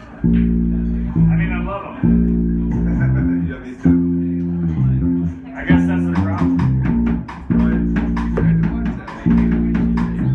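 Live rock band: bass and electric guitar, the guitar run through effects pedals, play a riff of held chords that repeats about every two seconds. Drums with cymbal hits join about halfway through.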